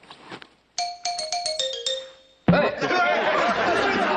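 A comic chime sound effect added in the edit: a quick run of about eight bell-like notes stepping down in pitch over a second and a half, fading away. Voices break in loudly near the end.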